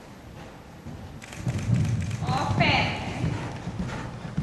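A horse cantering on the sand footing of an indoor arena, its dull hoofbeats growing louder from about a second in, with a brief voice in the middle.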